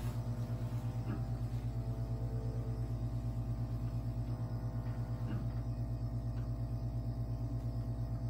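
Vacuum therapy machine running for a non-surgical butt lift: a steady low hum that pulses rapidly and evenly as the suction cups on the buttocks are worked, with a few faint clicks.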